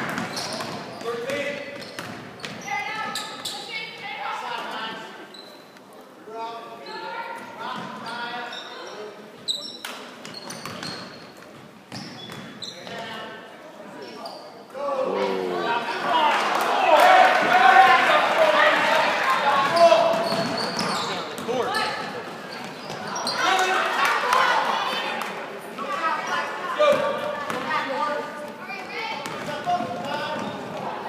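Basketball dribbled on a hardwood gym floor amid spectators' voices echoing in a large gym. A louder stretch of crowd shouting comes about halfway through, around a shot at the basket.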